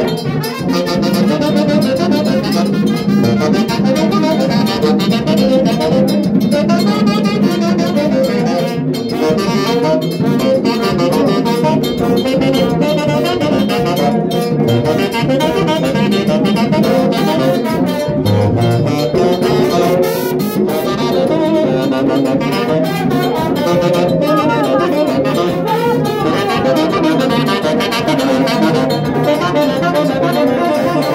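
A live saxophone plays loudly along with other instruments, as dance music.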